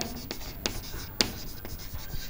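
Chalk writing on a chalkboard: a series of short taps and scrapes as the words are written.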